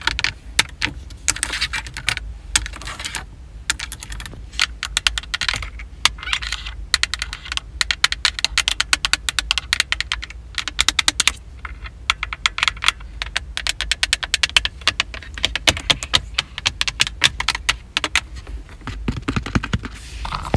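Long fingernails tapping rapidly on a car's dashboard buttons and plastic console trim. The sharp clicks come in quick flurries with brief pauses between them.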